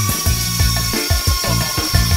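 Background music with a steady beat, over a steady high electric whine from the Arris Lander-X3's retract servos as the landing skid legs fold up.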